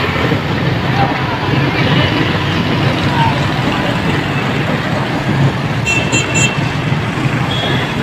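Busy street traffic: motorcycles and auto-rickshaws passing with a steady engine rumble, and a vehicle horn beeping a few short times about six seconds in.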